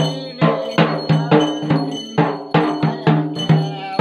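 Sri Lankan yak bera, a hand-played double-headed ritual drum, beaten in a fast, even rhythm of about three strokes a second, with a ringing metallic tone sounding between the strokes.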